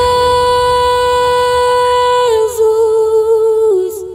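A woman's singing voice holding one long sustained note in a gospel song, then stepping down to a slightly lower note with a little vibrato and dropping again as it fades near the end.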